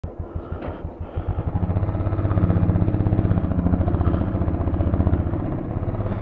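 Royal Enfield motorcycle engine running with a rhythmic exhaust beat, building up about a second in as the bike moves off, then holding steady.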